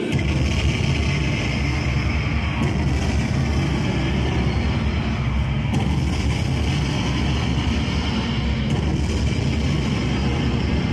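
A loud, steady low rumbling noise with no tune or voice in it, holding evenly throughout.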